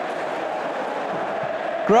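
Football stadium crowd, a steady mass of voices with no single sound standing out.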